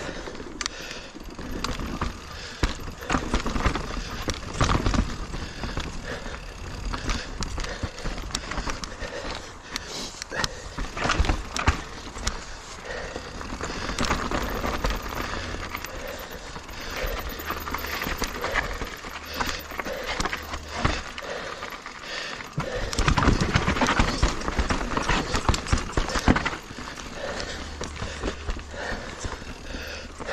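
Full-suspension mountain bike (2021 Giant Reign Advanced Pro 29) riding a rough dirt singletrack: tyres rolling over dirt, roots and rock with constant irregular rattles and knocks from the bike, heard close up from a chest-mounted camera. A rougher, louder stretch comes about three-quarters of the way through.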